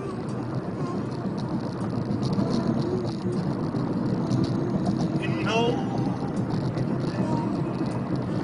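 Road noise inside a moving car's cabin, with faint music from the car stereo. A short voice sound comes about five and a half seconds in.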